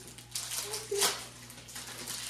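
Plastic wrappers crinkling in short bursts as small sweet packets are torn open and handled, with a faint murmur of a voice.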